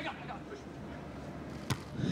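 A single sharp smack of a beach volleyball struck by a player, near the end, over faint steady stadium background.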